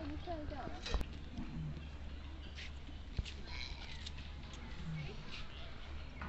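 Outdoor background of faint, indistinct voices over a steady low rumble, with a sharp click about a second in and another about three seconds in.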